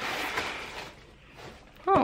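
Soft rustling from objects being handled, then quiet, then a short voiced sound from a woman with a gliding pitch just before the end.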